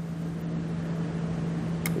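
A steady low hum with a faint hiss, and one short sharp click just before the end.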